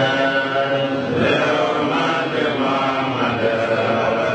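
Group of men's voices chanting a religious recitation together, continuous and sustained on held pitches.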